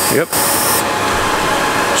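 Skew chisel taking a light taper cut on the flange of a turned wooden box base spinning on a lathe: a steady hiss of the cut that stops about a second in, leaving the lathe running.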